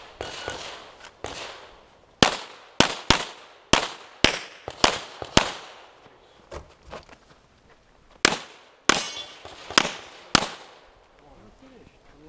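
Handgun firing about a dozen shots. A quick string of about seven comes roughly two a second, starting about two seconds in. After a short pause, several more shots follow near the end.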